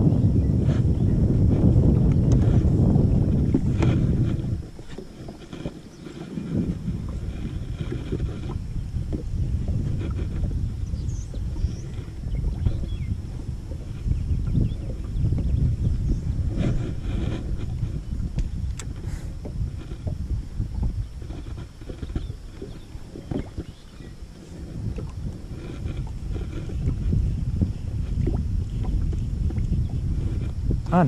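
Wind rumbling on the microphone, with choppy water lapping against a small boat's hull. It is heaviest for the first four seconds or so, then drops to a lighter, gusting rumble.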